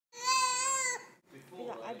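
A baby gives one loud, high-pitched squeal lasting about a second, then begins babbling "ada".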